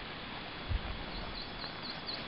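Steady rushing of a fast glacial river. In the second half a small bird gives a quick run of high chirps.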